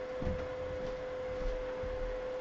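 Steady electrical hum: one constant mid-pitched tone over a low buzz.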